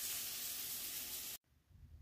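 Steady sizzle of food frying in a pan, which cuts off abruptly about a second and a half in.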